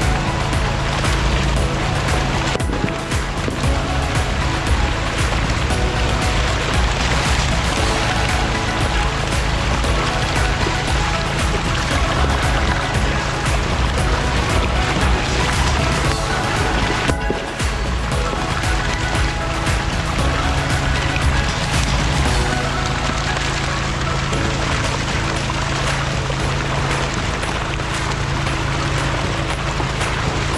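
Background music over a steady rush of water gushing down a fish-stocking chute, carrying a load of trout from the stocking truck's tank into the lake.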